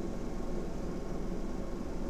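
Steady low hum with a faint, even hiss: the room's background noise, without any distinct event.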